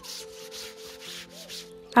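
A stiff plastic scrub brush scrubbing a wet, soapy cloth on a wooden floor in quick, regular back-and-forth strokes, each a short scratchy rasp.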